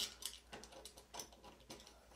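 A scatter of faint, irregular small clicks and ticks as a new bed-levelling spring is worked onto its bolt under the corner of a 3D printer's print bed by hand.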